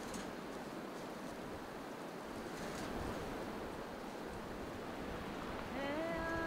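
Steady, even outdoor wind-and-sea ambience with no distinct events. Just before the end a pitched tone glides up into a held note.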